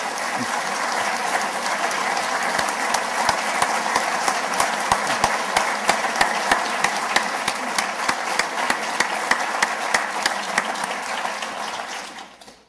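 Audience applauding, swelling in at the start and dying away near the end, with single claps standing out toward the close.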